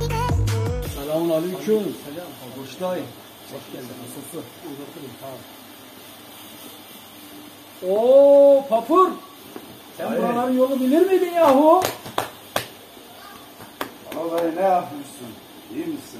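Background music with a deep bass, cut off about a second in, followed by men's voices speaking in short bursts. Two sharp clicks fall near the middle.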